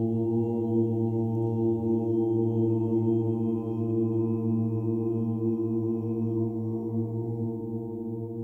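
Voices holding one long, low chanted note of Sufi dhikr, steady in pitch, easing off slightly near the end.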